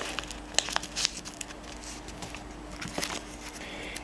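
A sheet of paper being folded over and creased by hand, crinkling with a few sharp crackles, over a faint steady hum.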